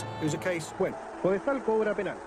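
A male football commentator's voice speaking; the words are not made out.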